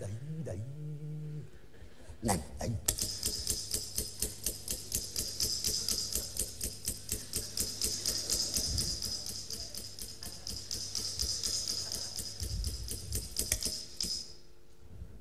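Rapid, evenly spaced mechanical clicking, about six clicks a second, over a low steady hum. It starts about three seconds in and cuts off just before the end.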